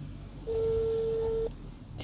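Mobile phone on speakerphone playing a ringback tone: one steady beep about a second long, starting about half a second in. It means the call to the other end is ringing and has not yet been answered.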